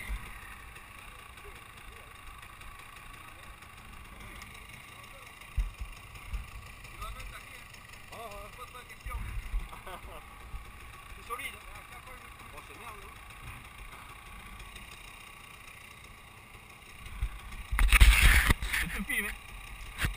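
Faint voices talking a little way off over a low steady background, with a loud rubbing rustle near the end as a gloved hand brushes the helmet camera.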